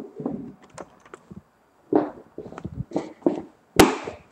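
Handling noise of a camera being picked up and moved: scattered knocks, taps and rustles, with one sharp click near the end.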